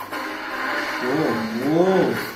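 Action-film trailer soundtrack playing: a music bed, then, from about a second in, a pitched sound that swoops up and down twice, growing louder.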